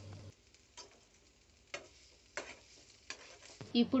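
A steel ladle scraping and tapping against a frying pan while chutney is scooped out, heard as a few short, faint clicks about a second apart.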